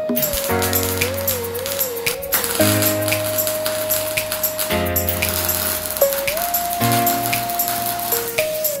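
Background music: a held synth melody over steady bass notes, with a fast ticking beat.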